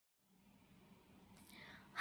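Near silence: faint hiss, with a soft breathy rustle about one and a half seconds in.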